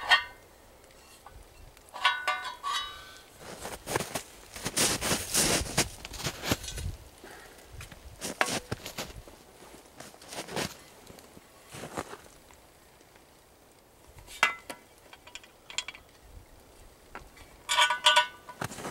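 Steel trail-camera security box being handled: scattered metallic clinks and knocks, with a stretch of scuffing and rustling about four to seven seconds in.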